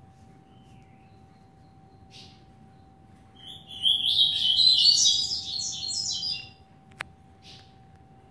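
Caged coleiro (double-collared seedeater) singing: a brief call about two seconds in, then a loud burst of fast, high twittering song lasting about three seconds. A single call and a sharp click follow near the end.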